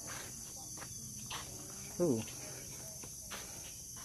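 A steady, high-pitched chorus of insects chirring without a break.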